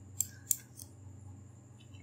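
Two sharp computer mouse clicks about a third of a second apart, then a fainter click. A faint steady high-pitched electrical whine runs underneath.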